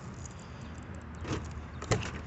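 Keys jangling in a hand, with two short clicks about a second and a half in and near the end as a hand takes hold of the Jeep Wrangler's door handle.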